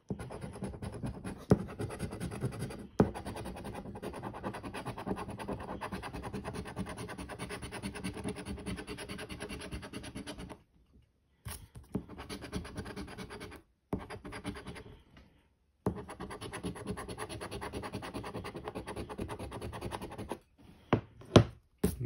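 A coin scraping the coating off a paper scratch-off lottery ticket in rapid short strokes, in three stretches broken by two brief pauses, the first about halfway through.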